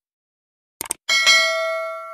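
Subscribe-button animation sound effects: a quick double mouse click, then a notification-bell chime that strikes about a second in and rings on, slowly fading.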